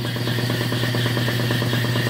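Rebuilt Borg Warner Velvet Drive 71C-series marine transmission spinning on a test stand during its post-rebuild pressure test: a steady mechanical hum with a fast, even rattle.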